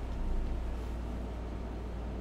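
Steady low background hum with faint hiss; no distinct mechanical event.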